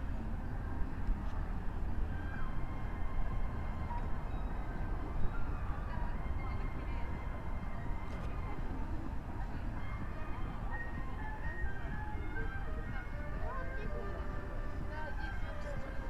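Outdoor ambience on a busy park path: distant voices and faint snatches of music over a steady low rumble.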